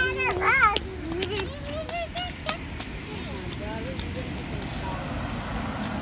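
Toddlers' feet splashing and slapping in a shallow rain puddle on asphalt, in short scattered splashes, with a young child's voice over the first couple of seconds.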